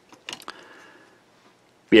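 A few light clicks and taps from the opened plastic housing of a handheld ham radio being handled, followed by a faint brief rustle.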